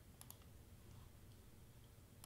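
Near silence: room tone with two faint computer mouse clicks near the start.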